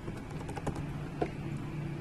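Computer keyboard keys being typed, a few irregular separate keystrokes, over a low steady hum.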